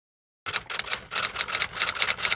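Typewriter sound effect: a quick, even run of keystroke clicks, about seven a second, starting about half a second in.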